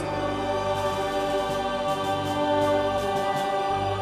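Church choir singing, holding a long chord.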